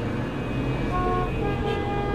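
Car horns honking in a traffic jam: a short honk about a second in, then a longer steady horn from about a second and a half, over a low rumble of traffic.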